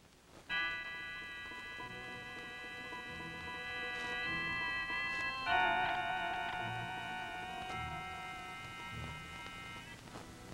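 Opening title music: a long held chord that shifts to a second, louder held chord about halfway through, then stops near the end.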